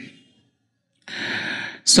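A man's audible breath in, picked up close on his headset microphone: a short rush of air lasting under a second, starting about a second in after a brief silence, just before he starts speaking again.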